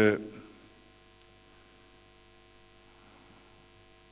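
A man's speech ends within the first half-second. A pause follows, filled by a faint, steady electrical mains hum in the microphone line.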